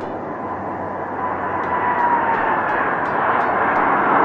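Jet airliner's engines at takeoff power as it accelerates down the runway and lifts off: a steady roar that grows louder, with a thin whine that falls slightly in pitch midway.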